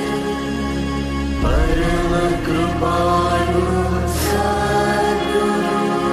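Devotional mantra chanting with music. A voice enters with a rising slide about a second and a half in, over a steady sustained drone.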